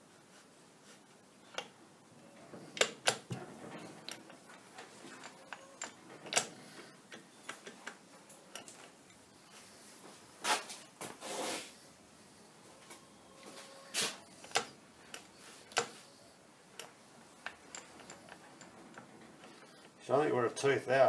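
Scattered metallic clicks and knocks at irregular intervals from a lathe apron gearbox being handled during reassembly, its levers being moved by hand.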